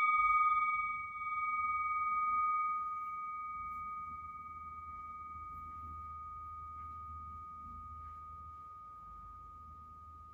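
A struck singing bowl ringing out and slowly fading, a clear steady tone with a fainter higher one above it; the loudness wavers once in the first few seconds before the long fade.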